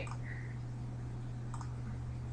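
A single faint computer mouse click about one and a half seconds in, over a steady low hum.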